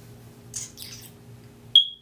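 A quiet room with a steady low hum and soft rustling, then a single short, sharp, high-pitched squeak near the end.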